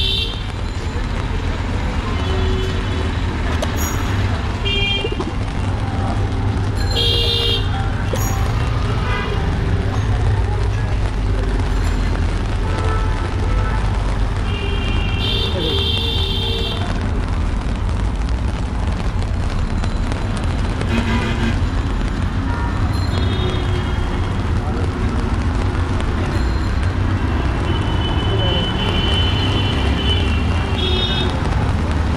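Busy wet city street: steady low traffic rumble with voices of passersby, broken by short vehicle horn toots several times.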